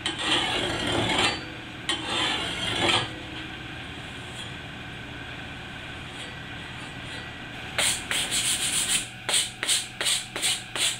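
A coarse bastard file rasping along the steel edge of a garden hoe blade in two long strokes, then a quieter pause. Near the end comes a run of shorter, quicker scraping strokes, about three a second.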